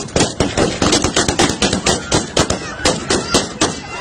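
Rapid rifle fire into the air, about five shots a second throughout.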